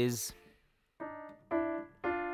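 Single digital piano notes played one at a time on a keyboard: a short note about a second in, then a second, louder note half a second later that is held and rings on. The notes pick out steps up from the root D toward the minor third of a D minor chord.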